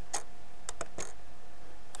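Four sharp clicks of a computer mouse in the first second, two of them close together, over a steady faint hum.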